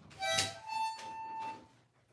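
Harmonica blown by a baby: a short breathy blast of two notes, then one note held for about a second.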